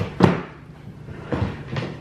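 Plastic-and-metal clatter of a stroller's car seat adapter frame being handled and set down: one sharp knock about a quarter second in, then two lighter clicks near the end.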